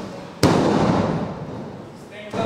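A wrestler falling onto a wrestling ring: one loud slam on the canvas-covered ring boards about half a second in, followed by about a second of the ring ringing and rattling as it dies away.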